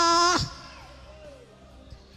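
A woman's voice through a microphone and PA, holding a long shouted note that cuts off about half a second in. After that, only a faint low hum.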